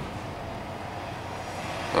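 Steady background rumble with no distinct events, swelling slightly near the end.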